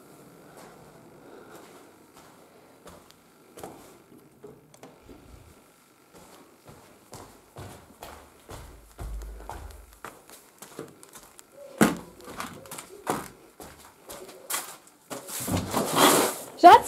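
Scattered knocks, clicks and rustles of a handheld camera being moved about while its user walks, sparse at first and busier in the second half, with a brief low rumble near the middle.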